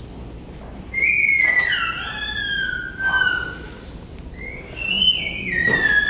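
A small child squealing: two long, high-pitched, siren-like screams. The first starts about a second in and slides down in pitch; the second starts past the middle, rising briefly and then falling.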